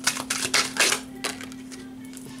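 A deck of tarot cards being shuffled by hand: a quick run of papery flicks through the first second or so, then it stops.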